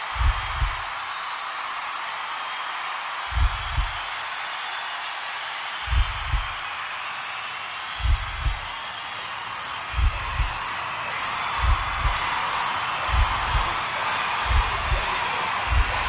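A heartbeat sound effect: paired low thumps, about three seconds apart at first and quickening to a little over one a second, over a steady wash of concert crowd noise.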